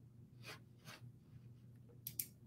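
Near silence: room tone with two faint, brief rustles about half a second and one second in.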